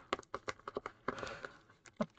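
Wrapped packs of 2022 Donruss baseball cards being handled: quick crinkles and taps of the wrappers, with a longer rustle about a second in.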